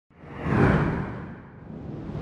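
Whoosh sound effect for an animated logo intro. It swells up quickly from silence and dies away, and a second whoosh begins to build near the end.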